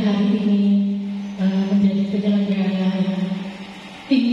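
A woman's voice chanting into a microphone in long, drawn-out held notes, growing quieter near the end.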